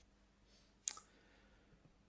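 Near silence of a quiet room, broken by one short, sharp click a little under a second in.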